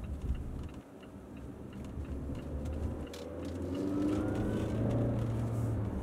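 A Mazda CX-9 SUV driving, with a steady low rumble. About halfway through, its engine note rises in pitch and grows louder, then eases near the end.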